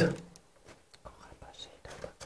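A spoken word trails off at the start, then faint soft rustling and a few small clicks as a face mask and papers are handled in a basket.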